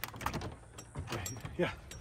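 Metal latch on an old wooden double door clicking and rattling as it is worked open, in a few short sharp clicks.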